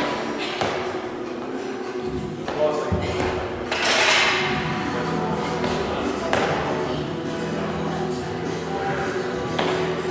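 Thuds of feet landing on a wooden plyo box and the floor during repeated box jumps, one every few seconds, over background music.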